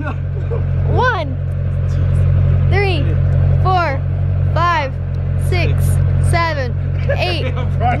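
A voice calling out a push-up count, one number roughly every second, over a steady low rumble.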